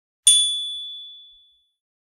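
A single bright ding from a notification-bell sound effect as the subscribe animation's bell icon is clicked. It strikes about a quarter second in and rings out, fading over about a second.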